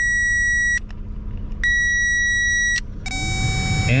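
Power Probe circuit tester giving a steady high electronic tone as its tip applies ground to the blower motor's control wire. The tone cuts out under a second in and sounds again for about a second. From about three seconds in a lower tone takes over as the front blower motor is grounded and starts to run, which shows the wire and connector are good.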